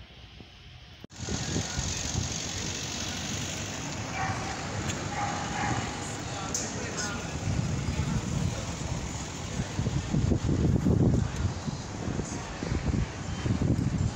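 Outdoor street ambience that starts abruptly about a second in: a steady rush of noise with low gusts of wind on the microphone, stronger in the second half, and a few voices of passers-by in the middle.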